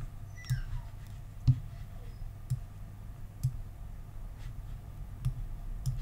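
Faint computer mouse clicks, about one a second, over a low steady hum.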